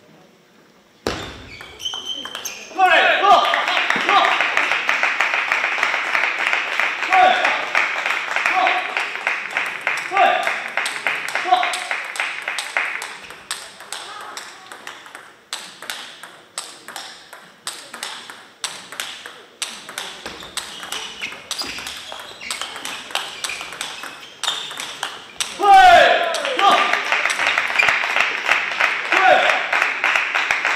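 Table tennis ball clicking off the rackets and the table in rallies, with stretches of loud voices echoing in the hall.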